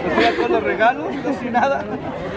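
Speech only: people chatting, several voices at once.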